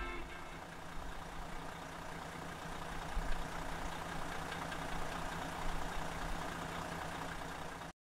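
A steady low engine hum with a held low tone and a few soft knocks. It cuts off suddenly at the end.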